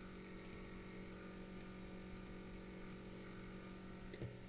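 Faint, steady electrical hum over low room tone.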